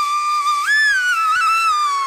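Background music: a flute holding a long high note that slides up a little under a second in and eases back down, over a steady low drone.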